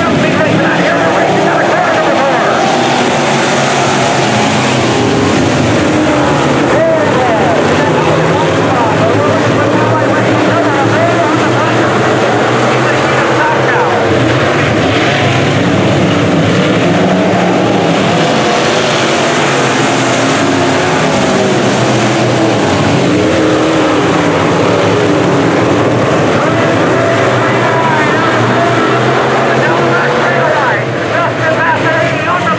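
A field of dirt-track sport modified race car engines running and revving together, their pitch rising and falling as the cars circle the oval.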